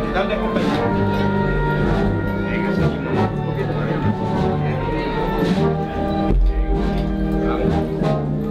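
Municipal wind band playing a Spanish processional march, with brass and woodwinds holding sustained chords over a steady bass line and occasional drum strikes.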